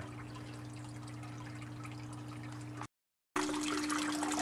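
Water trickling steadily in an aquaponics system over a constant low hum. The audio drops out into dead silence for a moment about three seconds in, then the trickle returns a little louder.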